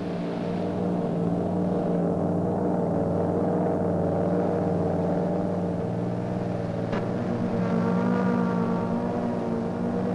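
Aircraft engine droning steadily, several held tones with a slight waver, as heard aboard the aircraft. A short click comes about seven seconds in, and a few higher tones join soon after.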